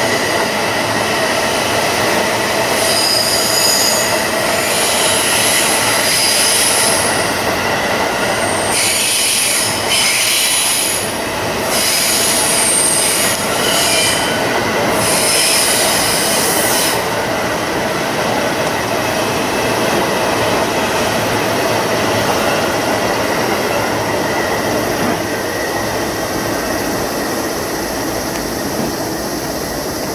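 Electric commuter train, a JR East E531 series, running along curved track, its wheels squealing high-pitched on and off over the steady rumble of the cars. The squealing stops about seventeen seconds in, and the rumble eases a little as the train draws away.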